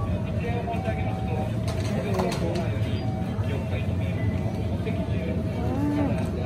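Steady low machine hum of the shop, with faint voices talking in the background and a few soft clicks about two seconds in.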